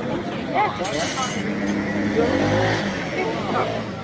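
A motor vehicle running past on the street, louder through the middle, under people's chatter.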